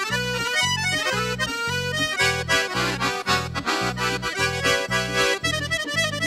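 Red bayan (Russian button accordion) playing a lively instrumental melody over a steady oom-pah bass, a little over two bass beats a second, with hand-played drums and a cymbal keeping time.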